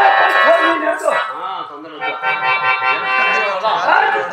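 Harmonium holding steady notes under a man's amplified voice declaiming or singing lines, with no drumming.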